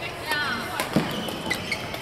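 Badminton rally: rackets striking the shuttlecock with sharp cracks, one about a second in and another half a second later, with shoes squeaking on the court floor.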